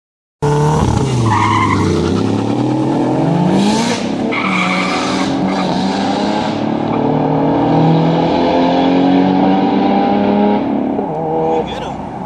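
Cars launching hard from a standing start with tyre squeal. Engine pitch climbs steadily through each gear and breaks at the gear changes, and the sound eases off a little before the end.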